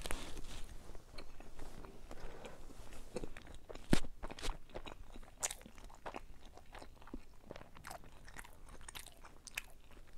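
A person chewing a mouthful of thick French-toast pancake with Greek yogurt, with small wet mouth smacks throughout. There is one sharper click about four seconds in.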